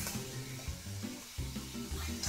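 Chicken pieces sizzling on an indoor grill, mixed with background music carried by steady low bass notes.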